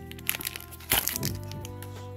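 Plastic blister packaging crackling and snapping as a booster pack is pried out of it, with one sharp crack about a second in, over steady background music.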